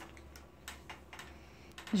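A few light, irregular clicks and taps from hands working at a wooden handloom, passing warp threads through the heddles.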